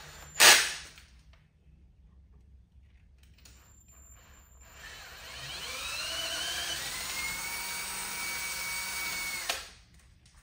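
A sharp knock about half a second in. A few seconds later a cordless drill spins up with a rising whine and then runs steadily, its twist bit drilling out a misaligned bolt hole in a metal supercharger spacer plate, until it stops just before the end.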